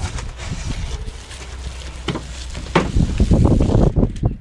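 Long-handled shovel working soil in an old bathtub, with a few scrapes and knocks, under wind rumbling on the microphone that is heaviest in the last second.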